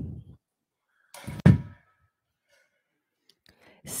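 A low breathy rumble close to the microphone fades out at the start, then a short exhale with a soft thump comes about a second and a half in.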